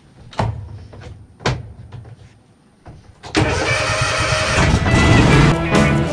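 Toro TimeCutter zero-turn mower being started: two sharp clicks over a low engine rumble. A little over three seconds in, loud guitar music comes in and covers it.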